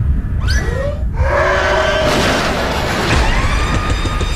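Film-trailer sound mix: a shrill creature screech with sweeping pitch about half a second in, followed by a loud, dense swell of music and effects.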